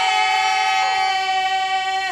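Unaccompanied women's voices in traditional Macedonian group singing, holding one long sustained note together and sliding down at the very end.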